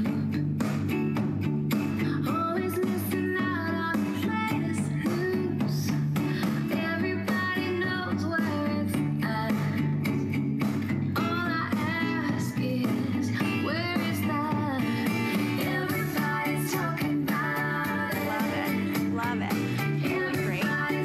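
Bose Wave Music System IV playing a song from CD: a woman singing, her voice sitting on top of a steady bass line.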